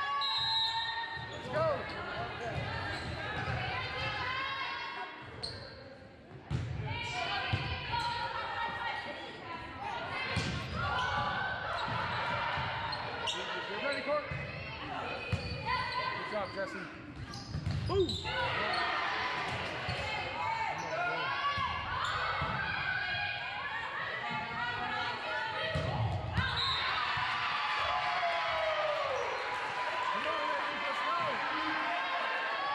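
A volleyball being struck and hitting the hardwood gym floor during a rally, a series of sharp smacks that echo in the large gym, under almost constant shouting from players and spectators.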